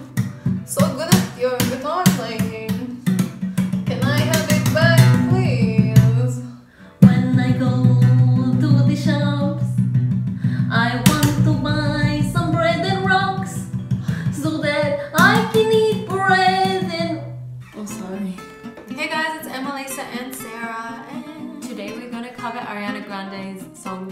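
A woman singing a light, comic made-up song over an acoustic guitar strummed in a steady rhythm, with a short break about six seconds in and a quieter last few seconds.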